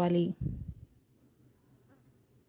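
A woman's long-drawn word trails off just after the start, followed by a short low bump, then near silence.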